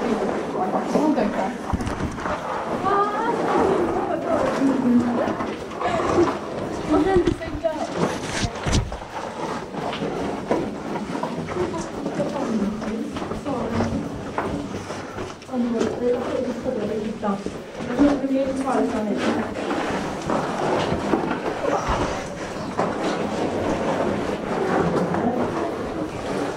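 Indistinct talking from several people, with occasional scuffs and knocks as they scramble over rock in a narrow cave passage.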